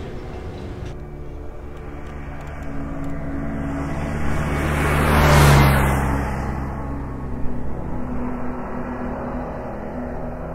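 A rising and falling whoosh that swells to a peak about halfway through and then fades, over a steady low hum.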